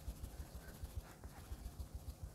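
A makeup sponge dabbing cream blush onto the cheek: faint, soft low pats, several a second.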